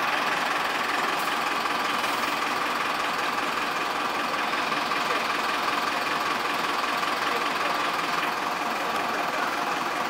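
Bus engine idling, a steady drone with no change in pitch.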